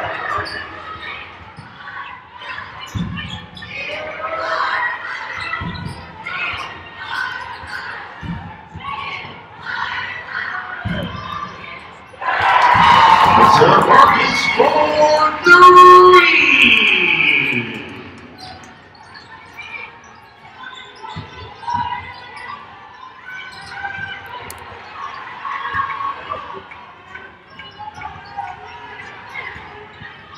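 A basketball bouncing on a hardwood court, a few low thuds a few seconds apart, with voices echoing in a large arena. A much louder stretch of voices and pitched tones rises about twelve seconds in and dies away near eighteen seconds.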